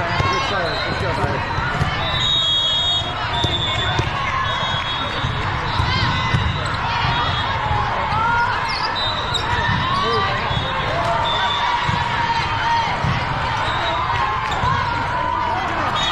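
Busy indoor volleyball hall: many overlapping voices of players and spectators, with a volleyball bouncing and thudding during play and short high squeaks now and then.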